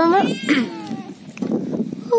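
A small domestic kitten meowing, with rising calls in the first half second.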